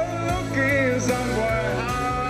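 A male voice singing into a handheld microphone over a recorded backing track, holding long notes that bend in pitch.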